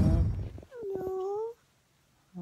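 A loud rustle of handling noise fades away, and about a second in a toddler makes one short wordless vocal sound that rises slightly in pitch.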